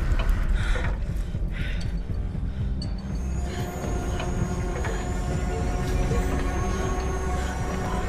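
Thriller film trailer soundtrack: a deep rumbling drone of tense score, with steady held tones, one of them thin and high, joining about three seconds in.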